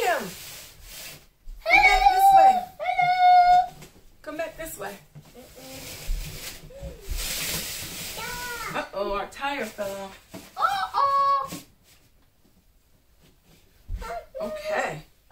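A young child's high-pitched, wordless vocalizing: several drawn-out calls and squeals, in two spells, with a brief rustle in between.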